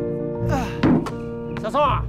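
Background music of sustained held notes, with a dull basketball thunk against the hoop just before the one-second mark, the loudest sound. A short voice follows near the end.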